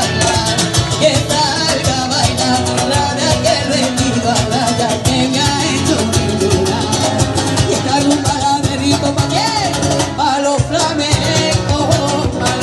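Live rumba played loud through a PA: a woman singing into a microphone over strummed acoustic guitar, with a dense, driving rhythm.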